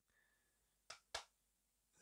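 Near silence, broken about a second in by two brief faint clicks a quarter second apart.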